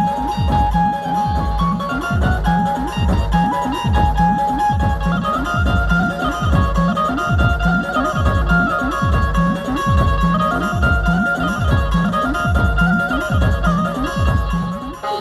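Instrumental Chhattisgarhi dhumal music: an Indian banjo (keyed string instrument) playing a repeating melody over a steady, fast beat struck on a Roland electronic drum pad.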